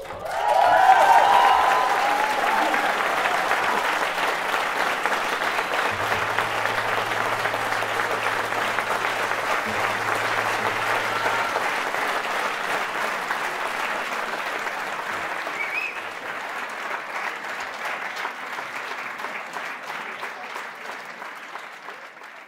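Audience applauding, with cheers and whoops in the first couple of seconds; the applause holds steady and then slowly fades out.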